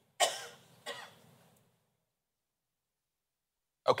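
A man clearing his throat in two short bursts, the second weaker and following about two-thirds of a second after the first.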